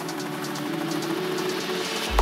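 Electronic dance music in a breakdown: held synth tones over a noisy wash, with no kick drum or bass, getting slowly louder as it builds toward the drop.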